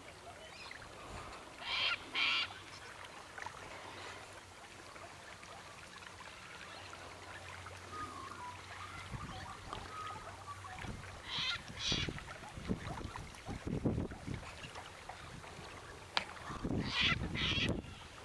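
Sulphur-crested cockatoos screeching: harsh calls in pairs, about two seconds in, again about eleven seconds in and near the end. Gusts of wind buffet the microphone in between.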